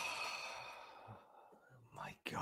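A man's long exhaled sigh, loud at first and fading away over about a second and a half, as he gathers himself before answering a big question.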